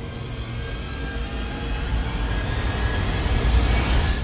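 Trailer sound-design swell: a deep rumble with rising noise that grows steadily louder, peaking near the end.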